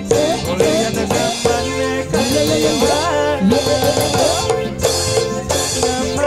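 Joged bumbung gamelan music: bamboo xylophones playing a fast, busy repeating figure over steady drumming and percussion.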